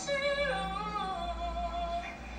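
Recorded female singing voice played back during a phone live stream, carrying a slow melody of held notes that step and glide between pitches.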